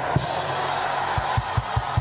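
A congregation shouting in response, as a dense wash of crowd noise over a held low note. About a second in, a quick, steady low drum beat starts at about five beats a second.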